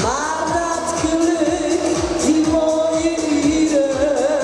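A woman singing a schlager song into a handheld microphone over backing music with a steady kick-drum beat. She holds long notes, the first sliding up into pitch right at the start.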